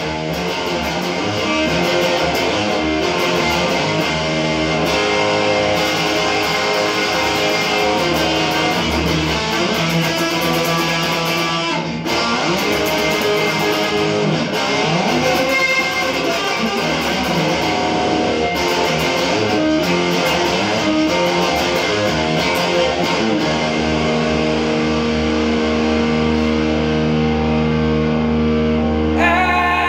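Electric guitar played continuously, a steady run of notes and chords, ending in a chord left ringing for the last few seconds.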